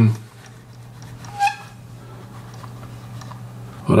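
Steady low hum, with one short, higher-pitched blip about one and a half seconds in.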